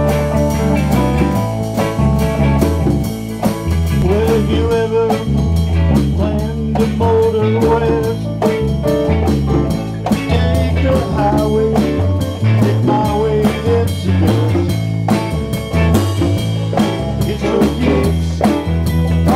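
Small live band playing a blues-style number: electric guitar and keyboards over a steady beat.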